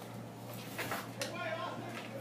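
Faint, distant voices calling and talking over a steady low hum, with a couple of short clicks around the middle.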